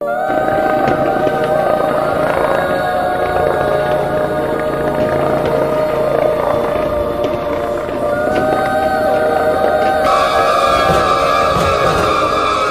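Background music of long held tones, moving up to a higher chord about ten seconds in, over a dense crackle of fireworks going off.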